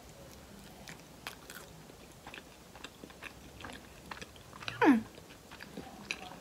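Soft, close-up chewing of a bite of pizza dipped in yogurt dressing, with small scattered mouth clicks. Near the end a falling hummed "hmm" of approval.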